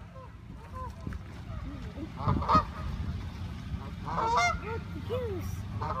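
Geese honking on and off in short, pitched calls, loudest about two and a half seconds in and again just past four seconds.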